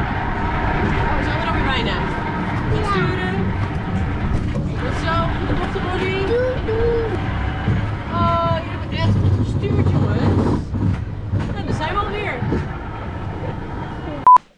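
Steady low rumble of a theme-park ride car in motion, with children's voices and snatches of chatter over it.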